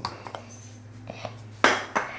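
Hard objects clinking and knocking as they are handled on a kitchen counter: a few light clicks, then one louder clatter near the end.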